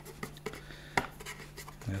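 Fingers handling and scratching at a cardboard shaver box, with light scattered clicks and rustles and one sharper click about a second in.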